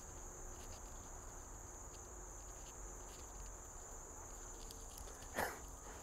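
Faint, steady high-pitched insect chorus, like crickets, with a short louder sound about five and a half seconds in.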